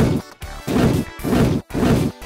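Missile-firing and crash sound effects, about four short blasts in quick succession, over background music.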